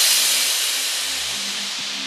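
House music in a DJ set: a loud white-noise swell fades slowly and falls away, left over from a build-up, while a sparse bassline of short low synth notes carries on beneath it.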